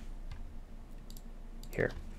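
A few soft clicks from a computer keyboard and mouse.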